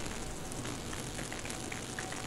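Steady hiss and faint crackle of microphone background noise on a video-call recording, with a faint thin steady tone.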